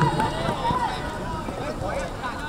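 Faint, distant voices calling out over steady outdoor background noise. A nearer, louder voice trails off at the very start.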